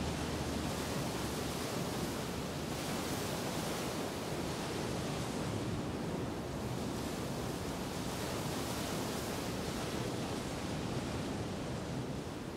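Steady, toneless rushing noise with slow, gentle swells, with no music.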